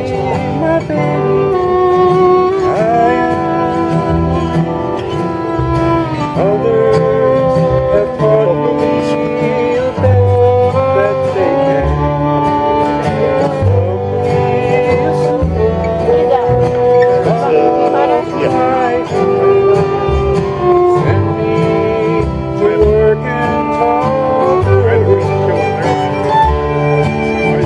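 Bluegrass instrumental jam: a fiddle plays a fast tune over acoustic guitar and upright bass, with steady low bass notes under a busy, sliding melody.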